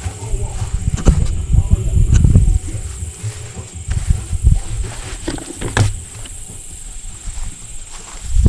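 Wind rumbling on the microphone, with a few sharp clicks and knocks as a hard plastic case is handled and lifted off its metal mounting bracket, the loudest click a little before six seconds in.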